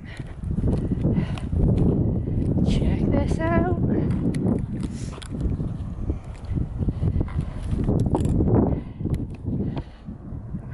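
Wind buffeting the microphone in a heavy low rumble, with the irregular thuds of a walker's footsteps and gear jostling. A short wavering vocal sound comes about three and a half seconds in.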